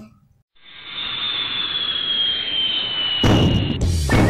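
Logo intro sound effect: a swelling whoosh with a thin high tone that slowly falls in pitch, then a heavy boom a little after three seconds in.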